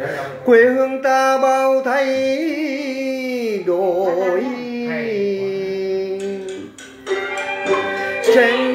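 A voice singing a slow chèo melody, holding long notes that slide between pitches, with a wide wavering vibrato about four seconds in and a short break just before the end.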